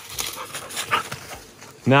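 A dog making a couple of brief, high sounds over footsteps crunching through dry leaves and brush. A man's voice starts near the end.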